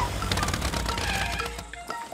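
Cartoon propeller plane's engine rattling with rapid clicks as the plane rolls to a stop after landing, winding down and fading out near the end. Background music plays under it.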